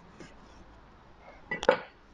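Kitchen utensils clink once, sharply, about one and a half seconds in, with a brief metallic ring, after a faint tick near the start.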